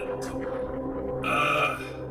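A man's short, drawn-out groan, 'uuuh', about a second in, over a low, steady musical drone.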